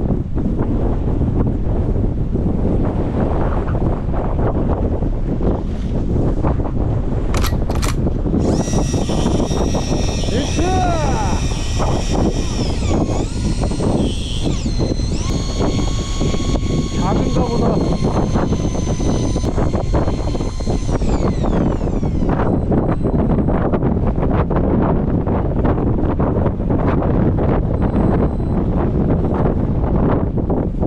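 Strong wind buffeting the microphone over the sea runs throughout. From about 8 seconds in, an electric fishing reel's motor whines for about 14 seconds as it winds in line. Its pitch dips and recovers briefly midway, then falls away as the motor stops.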